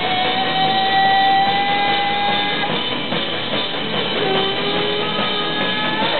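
Live punk garage rock band playing, with electric guitar, bass and a drum kit. A guitar note is held for about two and a half seconds at the start, and a lower one is held briefly later.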